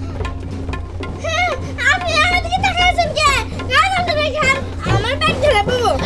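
A girl's high-pitched voice, whining and wailing in long wavering cries, over steady background music.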